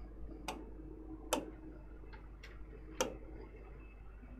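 Pen tapping on a digital whiteboard screen: about five short, sharp clicks at uneven intervals, over a faint steady low hum.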